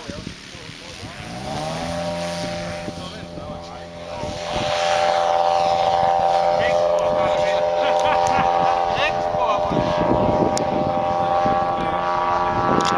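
The 200 cc petrol engine of a large model PZL-106 Kruk tow plane throttling up, rising in pitch about a second in, then holding a steady high note at full power for the tow takeoff. It gets louder about four and a half seconds in.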